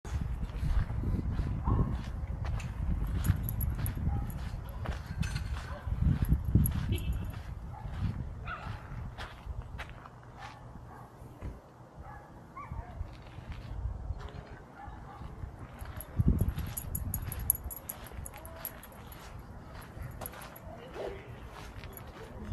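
Footsteps on a dirt path as a small dog is walked on a leash, with gusts of wind rumbling on the microphone, strongest in the first several seconds and again briefly about three-quarters of the way through.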